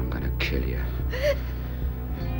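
A short gasp about a second in, over a steady, low, dark background music score.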